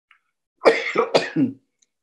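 A man coughing, a short fit of a few rough coughs in under a second, starting just over half a second in. He puts the cough down to lifelong asthma.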